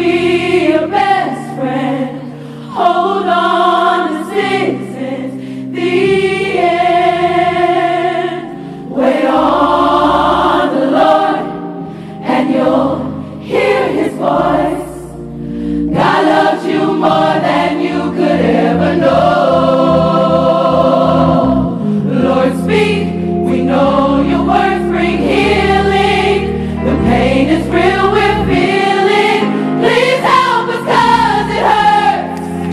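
Gospel choir singing long held chords in phrases, backed by an organ playing sustained low notes.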